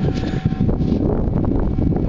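Wind buffeting the microphone in a steady low rumble, with short rustling scrapes from gloved fingers rubbing dirt off a freshly dug coin.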